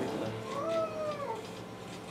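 A faint, drawn-out voiced hum that rises and then falls in pitch over about a second, during a pause in the prayer.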